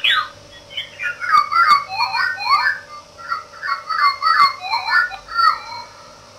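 Circuit-bent bird-song calendar sound strip playing short digitized bird-call chirps, retriggered over and over by a 555 oscillator, about three chirps a second, over a faint steady hum.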